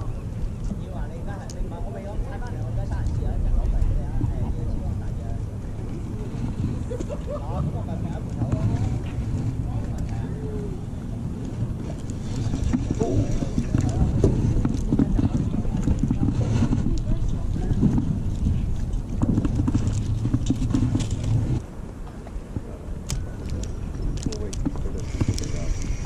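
Indistinct voices of people talking in the background over a steady low rumble. The rumble strengthens about halfway through and cuts off abruptly near the end.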